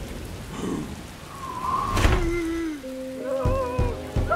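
Cartoon rain falling steadily, with a sharp crack of thunder about two seconds in. Wavering whining tones follow, and near the end a quick run of knocks, the dragon banging on a rain-streaked window pane.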